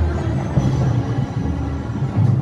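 Municipal wind band playing outdoors, with strong sustained low bass notes under the rest of the ensemble.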